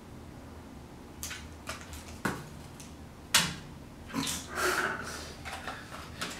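Small mystery pin boxes being handled on a wooden tabletop: a few light clicks and taps, a sharper knock about three seconds in, then a short rustle and scrape as a box is picked up.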